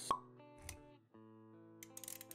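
Intro jingle with sound effects for an animated logo: a sharp pop just after the start, a short low thud a little later, then held musical notes with small clicking ticks near the end.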